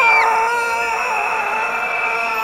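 A man's long, high-pitched scream, held on one pitch after a slight drop at the start.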